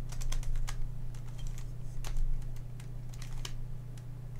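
Plastic clicks and clacks of a MoYu Redi Cube's corners being turned by hand, in quick irregular groups. A steady low hum runs underneath.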